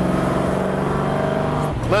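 1964 Ford Thunderbird's 390 cubic-inch V8, with headers and glasspack mufflers, accelerating hard at full throttle, heard from the driver's seat. The exhaust note holds steady, then drops in pitch near the end.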